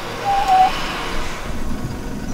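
Toyota Hilux Rogue's 2.8 turbo-diesel working as its wheels spin in soft sand, the vehicle hung up with the rear locker engaged and making no progress. A hiss of sand and noise comes on suddenly and fades over about a second and a half, with a short high tone about half a second in.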